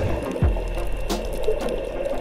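Underwater recording: muffled water noise with a steady low rumble and scattered clicking and crackling.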